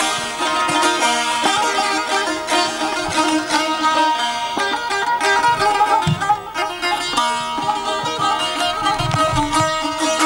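Two Azerbaijani saz, long-necked plucked lutes, played together in a fast, densely picked ashiq folk tune.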